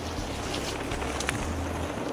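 Wind buffeting the camera microphone: a steady low rumble under an even hiss, with a couple of faint clicks.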